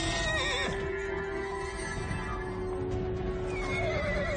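A cartoon unicorn whinnying: a horse-like neigh with a wavering, falling pitch in the first second. Background music with held notes plays throughout.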